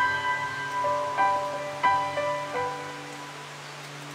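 Background music of gentle, ringing struck notes that come more sparsely and fade away during the second half.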